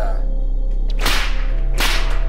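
Two sharp swishing cracks, trailer sound-design hits, the first about a second in and the second near the end, over a steady low music drone.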